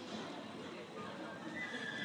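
A horse whinnying with a high call that begins near the end, over the general noise of an indoor arena.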